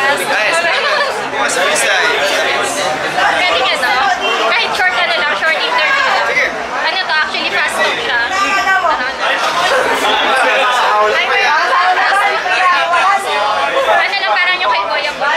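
Speech: people talking quickly back and forth, with chatter in the room behind them.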